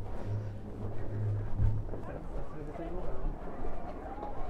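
Indistinct voices of people talking in the background over a steady low hum.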